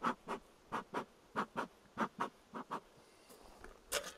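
Bee smoker's bellows pumped, giving short puffs of air in quick pairs, about a dozen over the first three seconds. A single sharp knock near the end.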